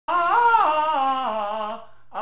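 A man singing one phrase on a held vowel in a high voice, the pitch sliding down in steps over about a second and a half before trailing off near the end.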